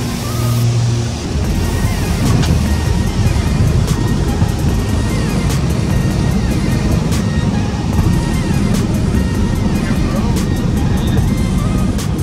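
Small propeller plane's engine and propeller noise, a loud steady drone heard inside the cabin, under background music with a regular beat.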